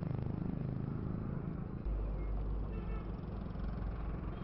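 Road traffic on a busy highway: motorbike engines and passing trucks as a steady noise, with a deep low rumble setting in about two seconds in.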